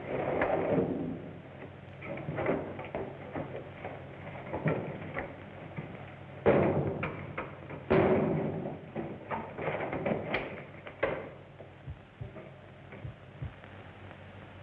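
Scuffling, bumps and irregular thuds of a hand-to-hand struggle in the dark, with the heaviest blows about six and a half and eight seconds in, over the steady hiss of an old film soundtrack.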